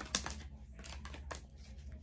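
Tarot cards being shuffled and handled to draw a card: a few quiet, scattered flicks and rustles of card stock.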